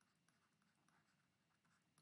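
Near silence, with very faint short ticks and scratches of a stylus writing on a tablet.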